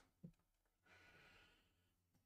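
Near silence: a faint click just after the start, then a soft exhale lasting under a second.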